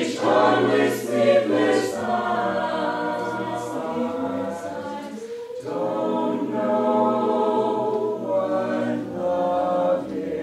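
Mixed vocal jazz choir singing a cappella in long, held chords. Near the middle the sound dips briefly, and then a new sustained chord swells in.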